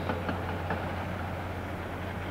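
Steady low rumble of distant heavy quarry machinery, such as haul trucks and loaders working in the pit, with no distinct events.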